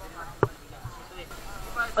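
Low background voices talking, with one sharp knock about half a second in.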